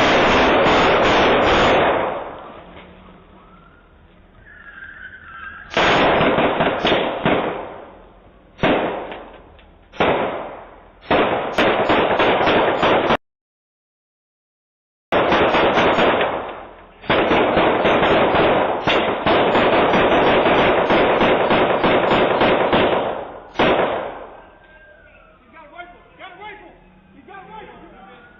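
Rapid gunfire heard through a doorbell camera's microphone: strings of shots fired in quick succession, a couple of seconds each with short breaks between them. After a sudden gap of silence about halfway, a longer unbroken string of shots follows.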